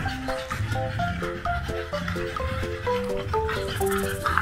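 Background music: a bouncy melody of short, separate notes over a steady bass line.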